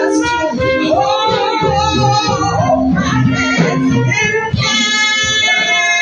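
A small live jazz band plays, with beats underneath and a high lead melody line on top. About halfway through, the melody holds one long note with a wide vibrato.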